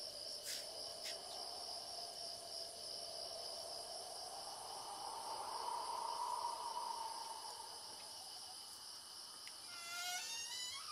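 Night chorus of crickets, a steady high-pitched trilling, with a low droning tone that swells between about four and eight seconds in and then fades.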